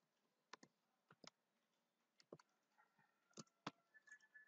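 Faint computer keyboard keystrokes: about seven separate, unhurried key clicks, typing a line of code.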